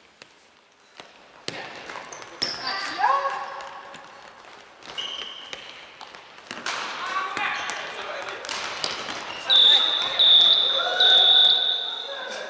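Indoor futsal play on a wooden sports-hall floor: the ball knocking off feet and floor, shoes squeaking short and sharp, and players calling out. Near the end comes a loud, high, steady squeal broken by short gaps.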